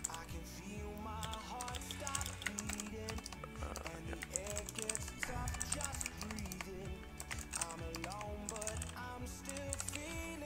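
Computer keyboard being typed on in uneven runs of keystrokes, with background music playing underneath.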